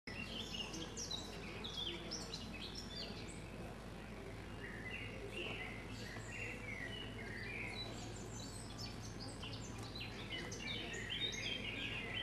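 Birds chirping and singing in short, overlapping calls, busier near the end, over a steady low hum.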